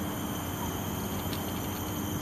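Steady outdoor background: an even hum and hiss with a few faint, steady high tones, and no distinct event.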